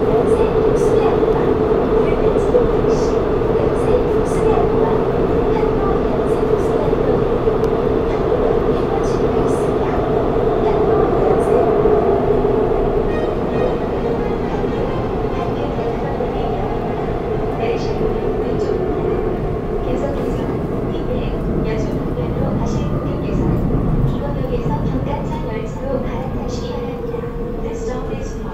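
Inside a Shinbundang Line subway car running between stations: a continuous rumble with a strong steady hum and small scattered rattles. It grows a little quieter from about halfway through.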